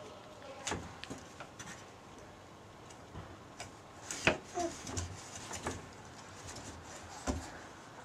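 A few scattered light taps and knocks of a baby's hands patting a small slatted wooden table, with a sharper knock about four seconds in, over a quiet background.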